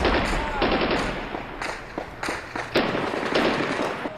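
Automatic gunfire: several short bursts of rapid shots, one after another.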